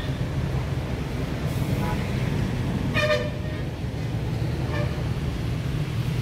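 Road traffic with a steady engine rumble and short vehicle horn toots, the loudest about three seconds in.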